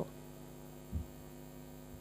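Steady low electrical mains hum in the microphone and sound system, with a faint low thump about a second in.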